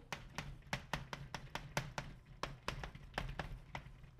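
Chalk writing on a blackboard: a rapid, irregular run of short taps and clicks as the chalk strikes and strokes the board.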